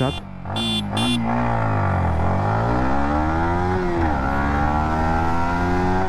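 A few short horn beeps signal the start. Then the Yamaha MT15 V2.0's 155 cc single-cylinder engine revs hard in a full-throttle launch from standstill. Its pitch climbs steadily and drops at upshifts about two and four seconds in.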